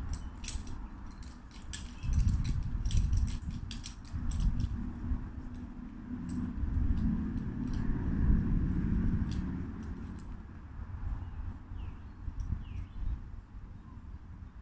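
Light clicking and clinking of small hard objects, thickest in the first few seconds, over an uneven low rumble of wind on the microphone. A couple of short chirps come near the end.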